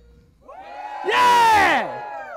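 A large group of marching-band members shouting a cheer together, rising to a loud yell about a second in, then sliding down in pitch as it fades.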